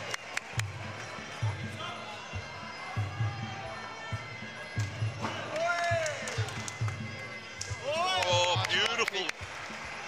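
Muay Thai fight music with a steady low drum beat about twice a second, over the sharp slaps of kicks and punches landing in the ring.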